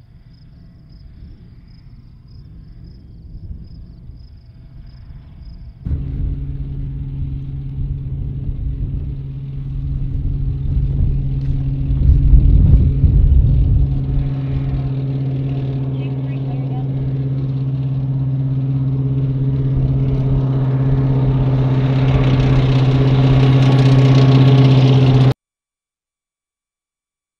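Faint insect chirring at first. About six seconds in, an armored military vehicle's engine cuts in, loud with a steady low drone and rumble. It is loudest as the vehicle approaches, swells again near the end, then cuts off suddenly.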